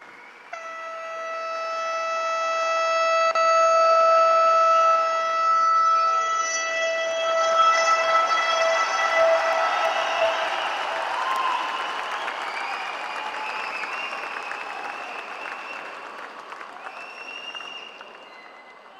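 A Chennai Metro train's horn sounds one long, steady note for about ten seconds, starting just after the flag-off, as a crowd applauds. The applause swells through the middle and fades toward the end.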